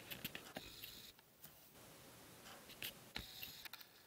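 Near silence broken by a few faint clicks and light rubs of a plastic Lego model being handled, in small clusters near the start and near the end.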